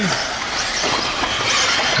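Eighth-scale electric RC buggies racing on a dirt track: a steady hiss of electric motors and tyres, with faint high whines rising and falling as the buggies speed up and slow down.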